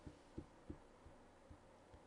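Near silence: faint room tone with three soft, low thuds in the pause between narration.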